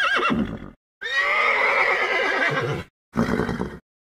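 Horse neighing: one long whinny of about two seconds, with a short sound before it and another after it.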